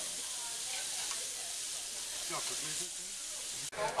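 Meat slices sizzling on a tabletop Korean barbecue grill, a steady hiss that cuts off suddenly near the end.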